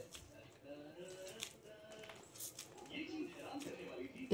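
Soft, mostly quiet squeezing of kaju roll dough in the hands, with a few light clicks about a second and a half and two and a half seconds in. A faint voice can be heard in the background.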